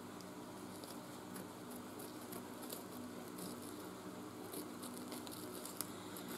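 Faint scattered snips and crinkles as water-soluble embroidery stabiliser is cut and picked away from around a towel's embroidery, over a low steady hum.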